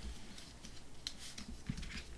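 Faint rustling and light taps of white cardstock being folded by hand and slid across a tabletop, with a few small clicks about a second in and near the end.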